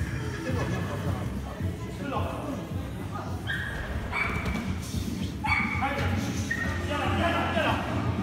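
A dog barking several times in short barks, mostly in the second half, over music and voices.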